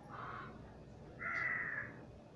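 A crow cawing twice: a short, lower caw at the start, then a longer, louder caw a little over a second in.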